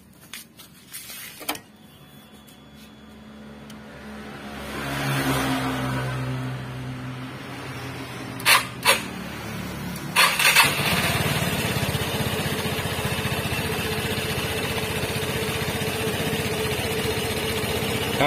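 Vespa Primavera scooter's single-cylinder four-stroke engine being started with the electric starter: it catches about ten seconds in and settles into a steady idle.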